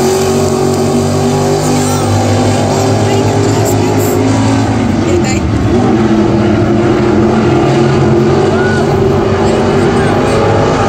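Several dirt-track stock car engines running at race speed as the pack laps the oval, their note climbing about halfway through.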